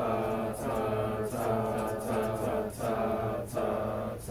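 A small group of voices singing a cappella in parts, coming in together at the start and moving through short phrased notes with brief breaks between them.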